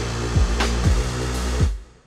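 Electronic beat playing back from Drum Weapons 4 drum-machine samples with a synth part: deep kicks that drop in pitch, a couple of sharp snare hits and steady low synth notes. The playback stops about three-quarters of the way through, leaving a short tail that fades out.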